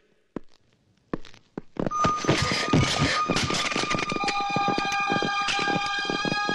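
Film action soundtrack: a few separate sharp knocks, then from about two seconds in a loud, dense, rapid clatter of hits and impacts with several sustained high tones layered over it.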